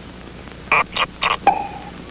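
Cartoon sound effects as a coconut is picked from a palm tree: a quick run of four or five short sharp sounds about a second in, ending in a brief steady tone.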